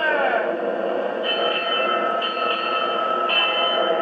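Vintage RCA Victor 45X1 tube radio playing the opening of an old-time radio drama through its speaker: a tone slides down in pitch at the start, then a steady held tone, with a higher tone sounding three times over it.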